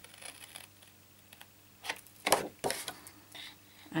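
Small paper-snip scissors cutting into cardstock: a few separate snips, mostly in the second half, the loudest a little over two seconds in.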